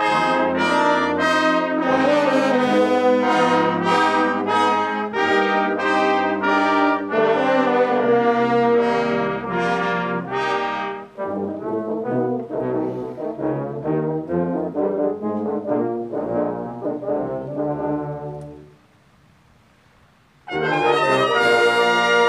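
High school brass choir playing a piece in chords. The full ensemble is loud for the first eleven seconds or so, then plays a softer passage. It breaks off into a short rest at about nineteen seconds, and comes back in loud about a second and a half later.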